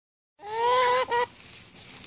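A female domestic duck giving a loud quack: one long call starting about half a second in, then a shorter second one. A loud quack like this is the mark of a duck (female); drakes make only a soft, whispery sound.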